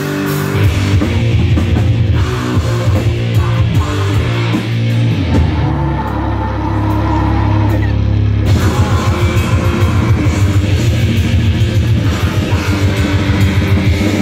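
Grindcore band playing live: heavily distorted guitar and bass over fast drumming, with a held low chord for about three seconds midway before the fast drumming comes back.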